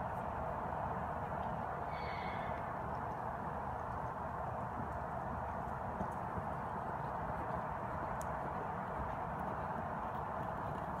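Faint hoofbeats of a horse being ridden around a sand arena out of view, under a steady background hiss, with a short high call about two seconds in.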